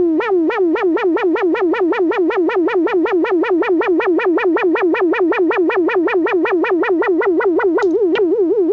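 MFOS Noise Toaster DIY analog synthesizer playing one buzzy tone whose pitch is swept up and down by its LFO in a fast, even warble. The warble speeds up to about six sweeps a second. A sharp click comes near the end.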